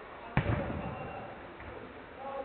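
A football kicked hard once, a sharp thud about a third of a second in that echoes around the enclosed hall, followed by players' shouts.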